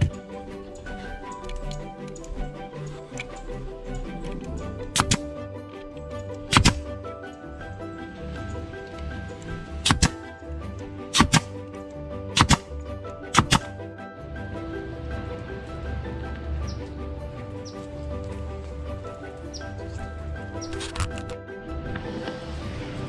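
Pneumatic stapler firing staples into a wooden chair frame: about seven sharp shots, spaced irregularly, most of them between about five and fourteen seconds in and one more near the end. Background music plays throughout.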